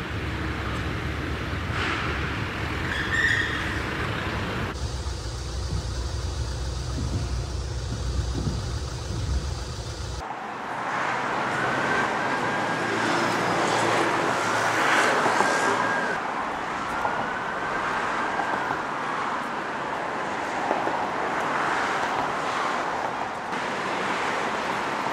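Street ambience of road traffic, vehicles passing, changing abruptly at shot cuts about five and ten seconds in. Around the middle, a tone rises and falls several times over the traffic.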